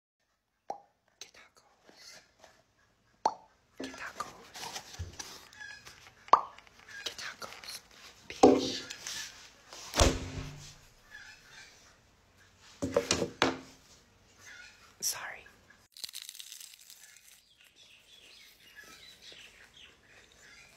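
A foam takeout box handled on a wooden table, with scattered sharp knocks and clicks, the loudest about halfway through, amid short bits of a person's voice.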